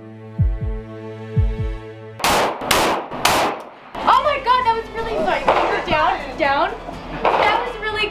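Three 9 mm pistol shots fired in quick succession, about half a second apart, a couple of seconds in. Background music with a low drum beat plays before them, and talking follows.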